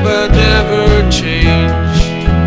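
Full-band folk-Americana instrumental passage: strummed acoustic guitar, electric guitar, keyboard and bass guitar over a drum kit keeping a steady beat.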